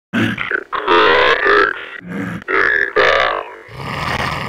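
Zombie growls and groans: a string of rough, guttural vocal grunts with short breaks between them.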